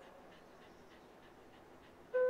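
Near silence with the faint, quick panting of a Shiba Inu, about four breaths a second.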